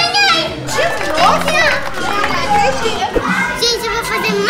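Children's high voices calling out and chattering, with background music playing underneath.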